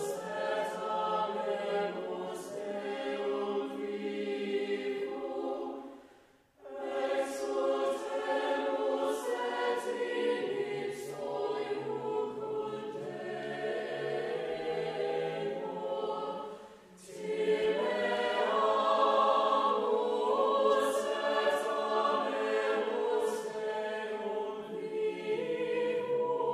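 Mixed choir of men's and women's voices singing sacred choral music, in phrases that pause briefly about six seconds in and again about seventeen seconds in.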